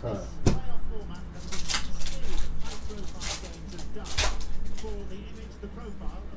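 Trading cards being slid and flicked against each other as a pack is sorted by hand: several short, crisp swishes about a second apart.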